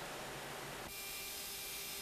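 Faint, steady hiss with no distinct strokes or tones, which changes character abruptly about a second in.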